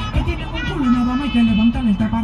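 A hip hop track with a vocal line over the beat, playing loud through a car audio system with two Kicker 10-inch subwoofers in a ported box, demonstrating the bass.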